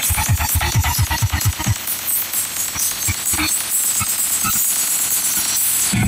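Electronic dance music with a fast, heavy bass beat played through a tall stack of speaker cabinets. About two seconds in the bass drops out, leaving a hissing high end with only occasional bass hits.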